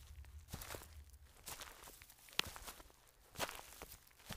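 Footsteps crunching through dry fallen leaves, a crunch about every half second as a person walks away. One sharper crack, the loudest sound, comes a little past halfway.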